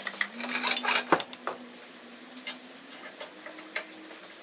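Metal clinking and clanking as an LS V8 engine hanging from a lifting chain is lowered into the engine bay. The chain and hook rattle and the block knocks against metal, with a cluster of clinks early and one sharp clank about a second in, then scattered lighter clicks.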